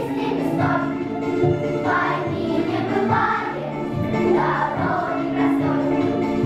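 Young girls' choir singing a song, with instrumental accompaniment carrying low bass notes beneath the voices.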